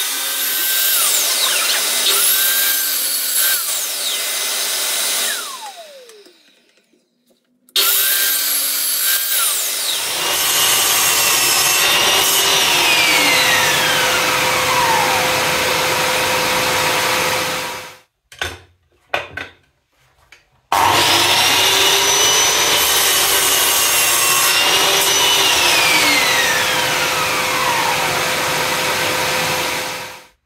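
Power saws cutting wood: a table saw rips a wooden board, then a mitre saw cross-cuts round wooden dowels into short pieces. The motor's whine falls away several times as the blade spins down, with short breaks between cuts.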